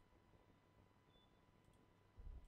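Near silence: room tone with a few faint computer-mouse clicks, a pair of them near the end.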